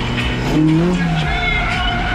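Toyota AE86 Corolla's engine revving hard while drifting, its pitch rising and falling, with music playing alongside.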